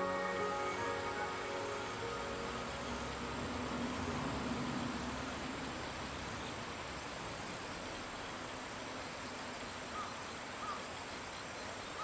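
Insects singing in one steady high-pitched tone over a soft outdoor hiss, with a few short, faint chirps near the end.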